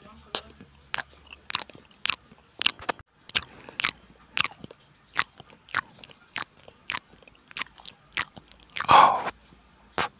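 Close-miked chewing of chicken and rice in chili sambal, with wet mouth clicks and smacks at roughly two a second. One longer, louder mouth sound comes about nine seconds in.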